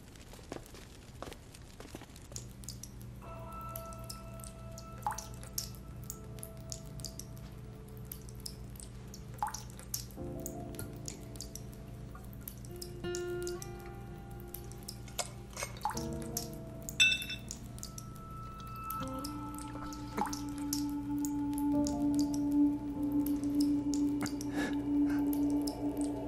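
Water dripping in irregular single drops over slow background music of long held notes that change pitch a few times. The sharpest drop or click comes about 17 seconds in, and the music grows louder near the end.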